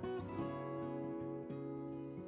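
Background music led by acoustic guitar, with plucked and strummed notes changing about every half second.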